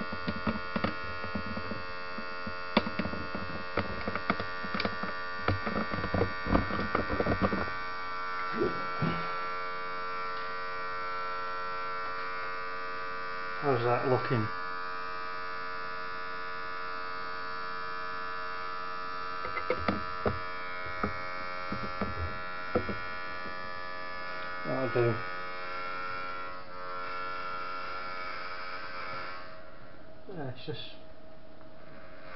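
Steady electric whine and hum from a powered-on Anet ET4+ 3D printer, with scattered clicks and knocks of handling in the first several seconds. Brief falling tones sound about midway and again near the end.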